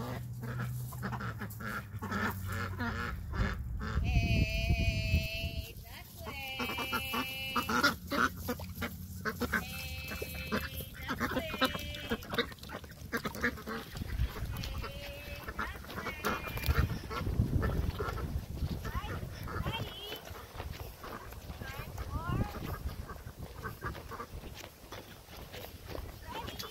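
Silver Appleyard ducks quacking and chattering as the flock moves, with a run of long, high, wavering calls from about four to twelve seconds in.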